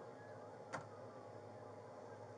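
Low steady background hum with a single sharp click about three quarters of a second in.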